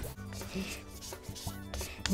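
Repeated short scratchy rubbing strokes over low, sustained background tones.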